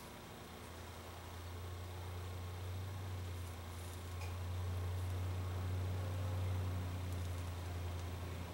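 A low, steady hum that slowly grows louder.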